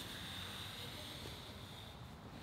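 Faint rustle of two grapplers' gis and bodies shifting on the mats over a steady low hiss, with no sharp impacts.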